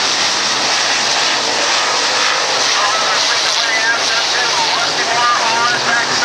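Several dirt-track pro stock race cars' V8 engines running hard at racing speed, a loud steady engine noise that rises and falls in pitch as the cars go through the turns.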